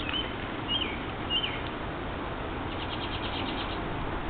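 A small bird calling: three short whistled notes in the first second and a half, then a quick trill of about ten ticking notes a second, shortly before the end, over a steady outdoor hiss.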